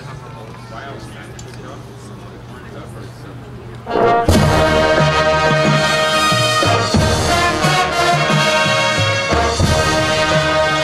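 High school marching band, brass and percussion, strikes up loudly and suddenly about four seconds in, full brass chords over a moving low bass line and sharp drum accents. Before that there are only low voices from the stands.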